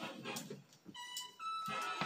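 Background music: an instrument holds a long note about halfway through, then a slightly higher note held through the end.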